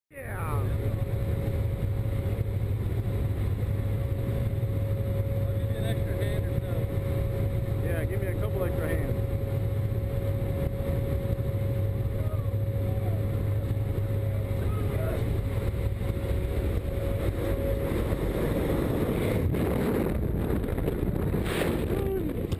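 Steady drone of a C-130 Hercules's turboprop engines heard inside the cargo hold, with faint shouting voices of the paratroopers over it. Near the end the engine tone breaks up into rough rushing air as the jumper leaves the aircraft.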